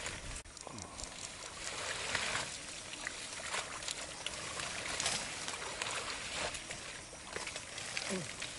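Shallow pond water sloshing and splashing, with dense water-plant leaves and stems rustling and crackling as people wade and push through them by hand. It is a continuous, uneven noise broken by many small irregular splashes and snaps.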